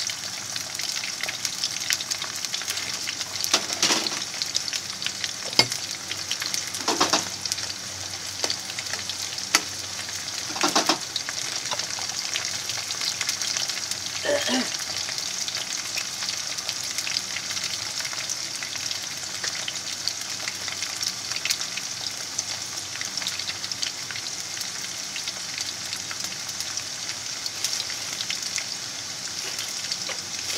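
Potato sticks frying in hot oil in a frying pan: a steady bubbling sizzle with fine crackling, and a few louder crackles in the first half.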